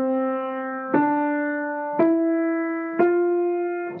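Piano playing single notes slowly, one struck about every second, each a step higher than the one before and ringing on until the next. It is a rising five-finger pattern played one finger at a time, each note brought to the key by a large forearm rotation.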